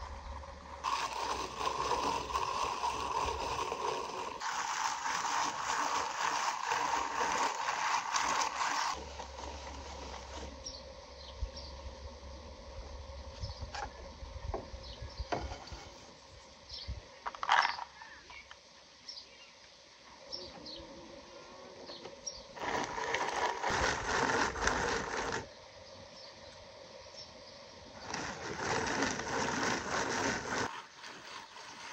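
Hand-cranked rotary drum grater grinding shelled walnuts into crumb, in three long spells of rasping cranking: a long one early on, a shorter one past the middle and another near the end. Between them there are small clicks and one sharp knock.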